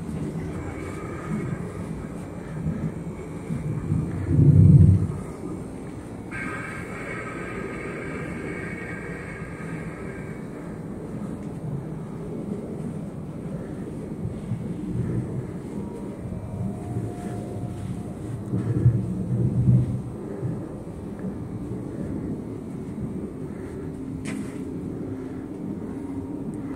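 A low, continuous rumble that swells briefly about four seconds in and again around nineteen seconds, with faint higher tones over it during the first ten seconds.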